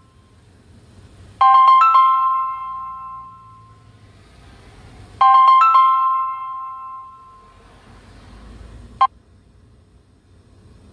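A phone ringtone: a short chime of a few bell-like notes that rings twice, about four seconds apart, each fading out. A single sharp click comes near the end.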